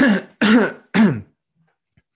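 A man clearing his throat three times in quick succession, about half a second apart.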